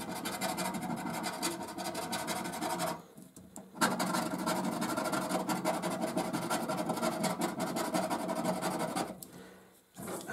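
A coin scraping the latex coating off a paper scratchcard in rapid, short strokes. There is a short pause about three seconds in, and the scraping stops about a second before the end.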